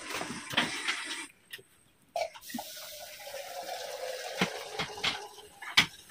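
Water poured from a metal kettle into a cooking pot: a steady pour lasting about three seconds, starting after a few light knocks of handling and ending with a sharp clink.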